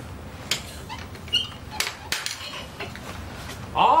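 Skis knocking against each other and the ski rack as a pair is pulled out: four or so sharp clattering knocks and clicks.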